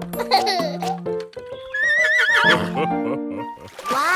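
Horse whinny sound effect, one high wavering call about halfway through, over bouncy children's song music.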